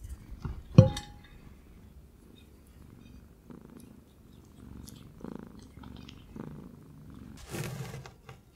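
A ferret sniffing and nibbling at a piece of coconut held in the fingers, close to the microphone, with soft licking and chewing sounds. One sharp tap about a second in is the loudest sound.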